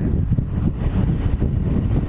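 Wind rushing steadily over the microphone of a Yamaha R1 sport bike at freeway speed, heaviest in the low end, with the motorcycle's running and road noise underneath.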